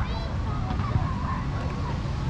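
Outdoor park ambience: distant voices of children at play, faint high calls and shouts, over a steady low rumble.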